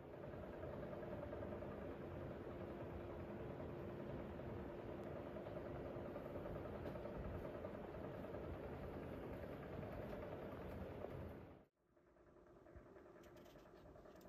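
Faint, steady low mechanical hum of indoor room noise, with a faint held tone in it that fades out about halfway. It cuts off suddenly near the end, and a quieter steady hum follows.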